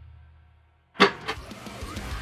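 The last chord of a metalcore drum cover rings out: cymbal wash and a low sustained note from the backing track fade away to silence. About a second in, a sudden hit starts a short sound effect that carries on quietly.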